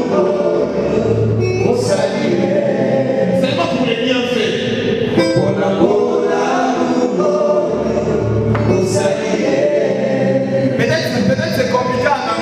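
Gospel worship song: a man singing into a microphone over held chords, with deep bass notes about a second in and again near eight and a half seconds.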